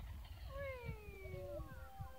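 A voice calls out in one long, falling cry, over wind rumbling on the microphone. Steady music tones fade in near the end.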